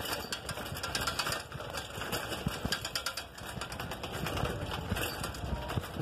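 A bicycle rattling and clattering over a broken, rough road, with many irregular knocks, mixed with rustling handling noise on the phone's microphone.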